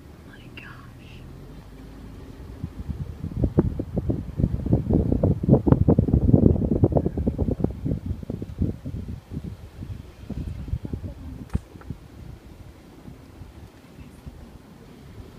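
Wind buffeting the phone microphone through an open car window as the car drives along. It swells over a few seconds, is loudest about midway, then dies back down, over the low hum of the moving car.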